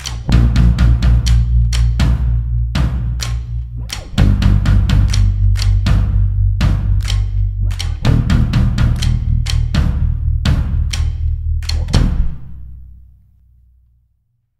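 Post-rock band playing loud and full with a drum kit pounding and heavy sustained bass, the last hit landing about twelve seconds in and ringing away to near silence: the end of the song.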